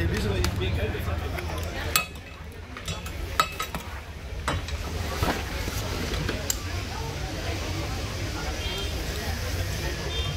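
Metal clicks and clinks of a racing seat harness being buckled and adjusted around a seated driver, several sharp clicks spread over a few seconds, over a low steady hum.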